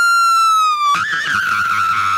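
A long, high-pitched scream, held steady with a slight fall in pitch, breaking about a second in and resuming at the same high pitch.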